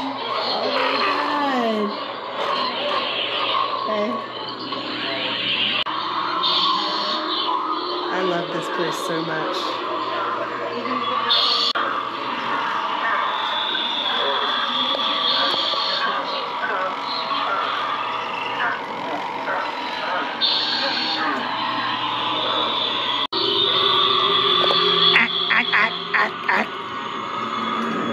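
Busy mix of voice-like sounds and music from an alien attraction's sound system, over a steady low hum; the mix changes abruptly at a cut about 23 seconds in.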